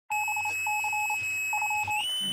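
Electronic beeping: a mid-pitched tone keyed on and off in quick short and long pulses, in three groups, over a steady high-pitched whine.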